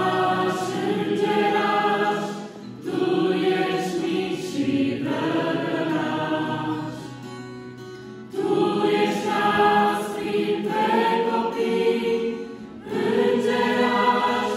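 Mixed youth choir singing a Romanian Christian hymn, accompanied by an acoustic guitar. The singing comes in phrases, with short pauses between them about every five seconds.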